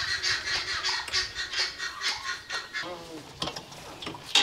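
Hydraulic floor jack being pumped by its long handle while lifting a Range Rover Evoque, giving a quick, even run of squeaks and clicks, about four a second, that thin out in the second half.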